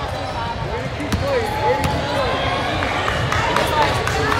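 Basketball bouncing on a hardwood court, a few sharp thuds, under the echoing chatter of voices in a large gym.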